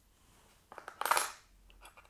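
Small metal test parts clinking and clattering against each other and a plastic box as they are handled, a quick run of clicks about two-thirds of a second in, then a few faint clicks near the end.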